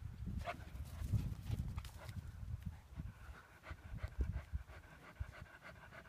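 A dog panting after a run, the breaths coming in a quick, regular rhythm in the second half, over low rumbling noise on the microphone.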